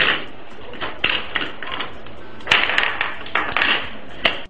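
Steel bolts and acrylic plates being handled on a tabletop: a string of light clicks and clatters, with a busier patch of rattling about two and a half seconds in.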